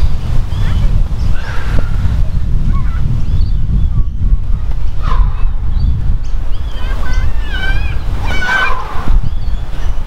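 Wind buffeting the microphone: a loud, unsteady low rumble that runs on without a break.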